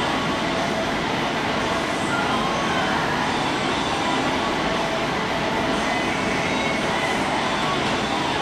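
A steady, even rushing noise with faint voices underneath it.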